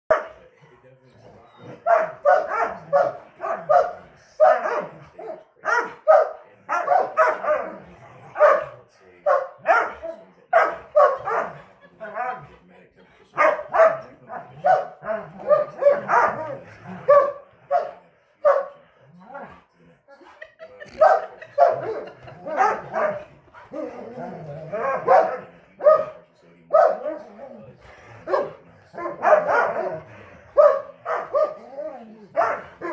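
Dogs barking in rough play, a German Shorthaired Pointer and two Irish Setters trading short sharp barks in quick clusters of several a second, with brief lulls between bouts.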